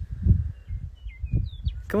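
Outdoor wind buffeting a phone microphone with an uneven low rumble, and a few faint short bird chirps in the middle.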